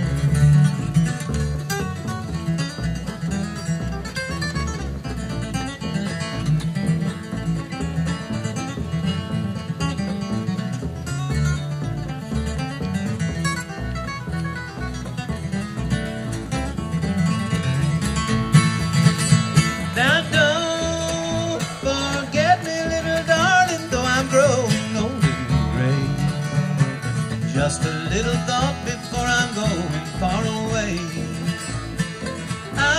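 Bluegrass band playing an instrumental break: a flatpicked steel-string acoustic guitar takes the lead over rhythm guitar and upright bass. About two-thirds in, a higher melody line with slides and bends comes in on top.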